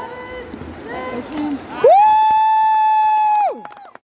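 A loud horn blast held steady for about a second and a half, starting about two seconds in, swooping up into pitch at the start and sagging down as it dies away, with voices before it.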